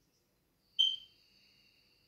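A high-pitched whistle-like tone that starts suddenly about a second in and fades away over most of a second.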